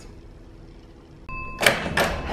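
A door being opened by its metal lever handle: a sharp handle-and-latch click about a second and a half in, with a second click near the end. A brief high beep comes just before.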